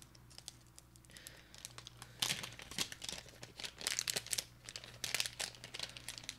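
A small sealed packet being crinkled and torn open by hand: irregular crackles and rips, sparse at first and getting louder and busier about two seconds in.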